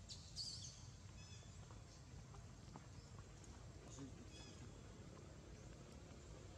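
Faint, short, high-pitched animal squeaks or chirps: a slightly louder one about half a second in, then a few briefer ones, over a low steady background rumble.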